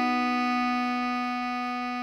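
Bass clarinet tone holding one long melody note, written C-sharp (sounding the B below middle C), slowly getting quieter.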